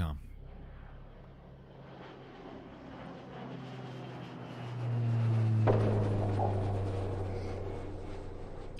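Jet airplane sound effect: a rushing engine noise over a low steady hum, growing louder until about five seconds in, then slowly fading.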